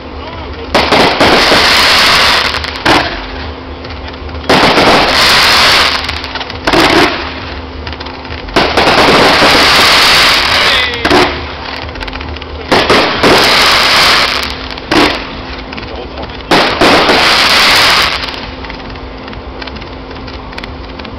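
Fireworks display firing in volleys: five loud stretches of rapid crackling reports, each lasting one to two seconds and coming every three to four seconds, with single sharp bangs in the gaps.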